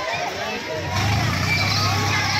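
Fairground din: people's voices and chatter over a steady low machine hum that grows louder about a second in.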